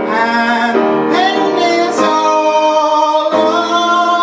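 A man singing long, held notes that bend in pitch, with grand piano accompaniment, performed live.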